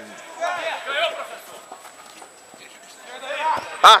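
Voices of players calling out across an outdoor football pitch, fainter than a nearby man's voice, which shouts loudly just before the end.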